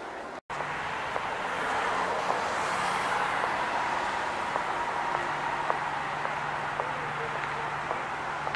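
Outdoor city street ambience: a steady wash of passing traffic with faint voices of people nearby. It cuts in after a brief silent gap about half a second in.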